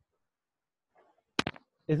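Near silence for over a second, then a brief sharp click and a man's voice resuming speech at the very end.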